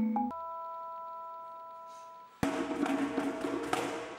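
Vibraphone notes ending in a struck chord left to ring and fade for about two seconds. Then the whole percussion ensemble comes in suddenly and loudly, with mallet notes over sharp drum strikes.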